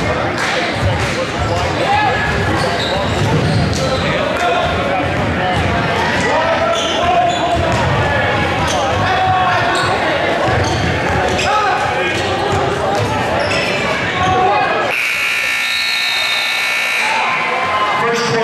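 Crowd voices in a gym with a basketball bouncing on the hardwood during play. About fifteen seconds in, the scoreboard buzzer sounds steadily for about two seconds as the game clock runs out, marking the end of the period.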